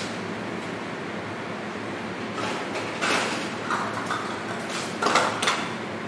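Steady hum of kitchen ventilation, with a few short rustles and knocks from about two and a half seconds in, the loudest near five seconds, as a cook handles things off-camera.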